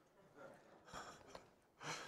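Faint breathing from a man pausing between spoken phrases: a few soft intakes of breath, the clearest just before the end.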